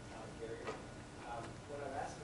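Faint, distant speech from a voice off the microphone, a question being put to the speaker, with two light clicks about a second apart.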